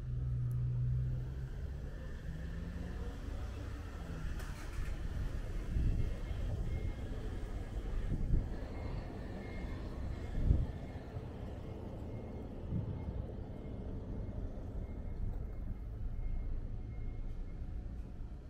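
Street ambience: a motor vehicle's engine hums at the start and fades away within the first few seconds. A low rumble continues under it, broken by a few dull thumps.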